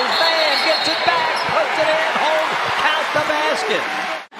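Basketball game sound on a hardwood court: the ball bouncing amid a steady din of crowd noise, with many overlapping shouting voices.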